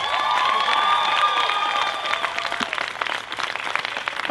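Crowd applauding, many hands clapping, with held cheers over the first two seconds or so; the clapping thins a little toward the end.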